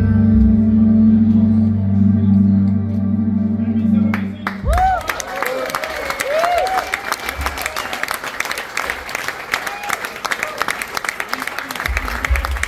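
A live band's held final chord rings on and cuts off about four and a half seconds in. The audience then claps and cheers, with a few short whoops rising and falling in pitch.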